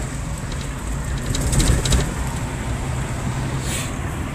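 A 4WD's engine and road noise heard from inside the cab while driving: a steady low rumble, with a brief run of faint ticks about a second and a half in.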